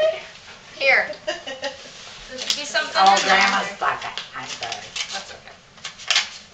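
Indistinct voices of children and adults in a room, with a short high falling cry about a second in. Light crackling of paper as a birthday card and envelope are handled.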